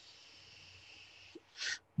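Faint steady hiss of someone drawing on a pen-style pod vape for about a second and a half, then a small click and a short breathy exhale near the end.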